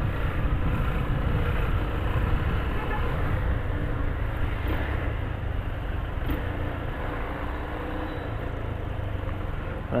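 A Yamaha Fazer 250's single-cylinder engine running steadily at low speed as the motorcycle filters between queued cars, heard with wind rush and traffic noise.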